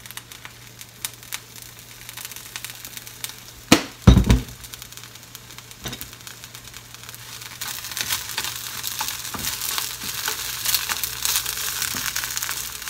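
White spring onion pieces frying gently in sesame oil in a pan on low heat: a light, ticking sizzle that grows louder from about halfway through. A single loud thump sounds about four seconds in.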